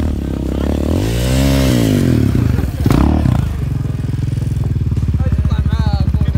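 Single-cylinder engine of a Yamaha Raptor quad bike (ATV) revving up and back down, then, after a break about halfway through, running steadily with a fast, even pulsing beat.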